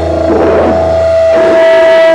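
Loud live rock band playing: a steady held tone rings over a low drone, with little drumming in these seconds.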